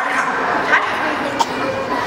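A few short, high barks like a small dog's yaps, heard over voices.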